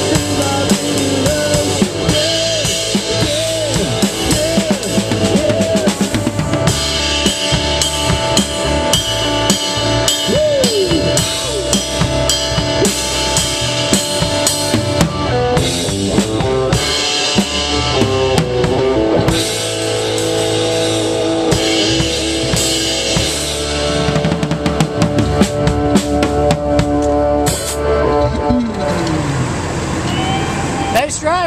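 Live rock band playing, with a drum kit close up (bass drum, snare and cymbals) under electric guitar with bending notes. Near the end the music winds down on a falling pitch slide.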